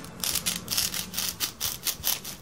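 Wooden popsicle stick being pushed and worked into a styrofoam disc, squeaking and scraping in a quick, irregular series of short rubs.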